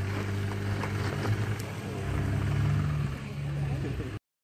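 An 80-series Toyota Land Cruiser's 4.5-litre inline-six engine running at low speed as the truck crawls over trail rocks. Its note rises about halfway through.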